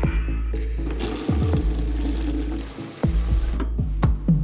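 Kitchen tap water running into a plastic bucket with car-wash soap, filling it with suds; the water starts about a second in and stops shortly before the end. Electronic music with a heavy bass beat plays throughout.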